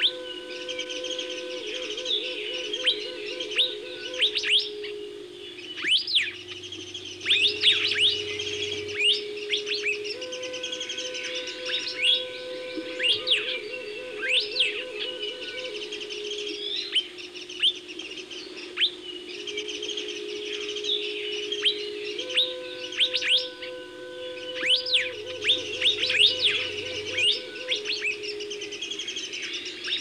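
A dense chorus of birds chirping and twittering throughout, with many quick high calls. Underneath, low sustained music tones swell and fade in a repeating cycle about every twelve seconds.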